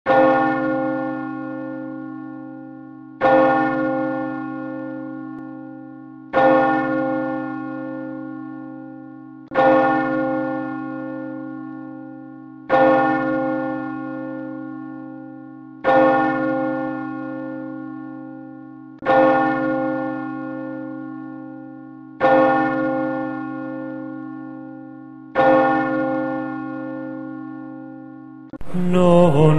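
A single church bell tolling, struck nine times at an even pace of about one stroke every three seconds. Each stroke rings on the same deep, steady note and fades slowly without dying away before the next.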